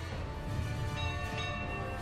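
Background music of sustained notes over a low rumble, with bell-like high tones entering about halfway in.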